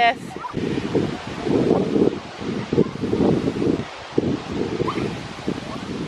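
Wind buffeting the microphone in uneven gusts, with a low rumbling rush that rises and falls.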